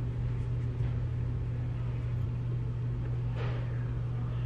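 Steady low hum under even background noise, with one faint brief swish about three and a half seconds in.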